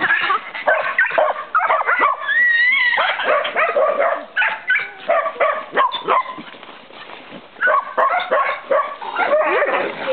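Several Podenco hounds (Ibizan and Andalusian) yipping, barking and whining in rough play, with many short calls overlapping. The calls ease off about two-thirds of the way in, then pick up again.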